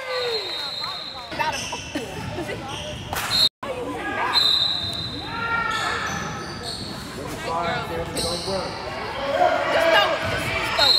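Basketball game play on a hardwood gym floor: a ball bouncing, sneakers squeaking in short high chirps, and players and spectators calling out, echoing in the large gym. The sound cuts out completely for a split second about three and a half seconds in.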